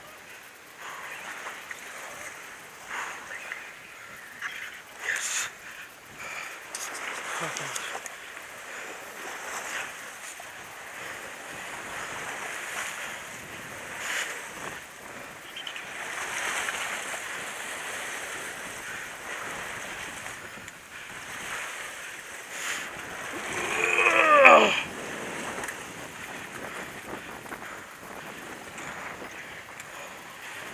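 Sea surf washing against a rocky shore, with wind on the microphone and scattered small knocks. About 24 seconds in there is a brief loud shout that falls in pitch.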